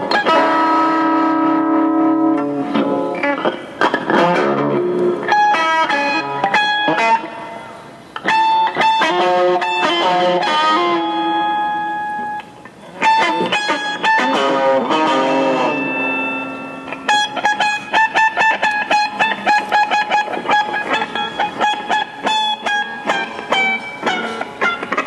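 Electric guitar, a Fender Telecaster through a Fender Champ tube amp, played in free improvisation: picked notes and chords ring out. The playing thins out briefly twice and then turns into fast repeated picking from about two-thirds of the way through.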